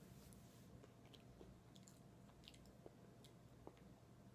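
Faint chewing of chips, a few soft crunches and mouth clicks scattered over near silence.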